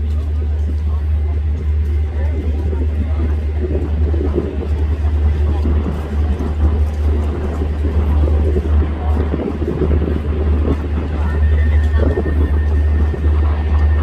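City street noise: a steady, heavy low rumble of traffic with indistinct voices of passers-by.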